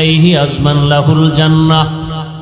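A man's voice chanting in a long, drawn-out melodic line, holding steady notes and sliding between them: the sung intonation of a Bangla waz sermon.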